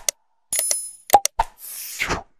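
Subscribe-button animation sound effects: sharp mouse-click pops, a short bell ding with high ringing tones about half a second in, another click, then a whoosh near the end.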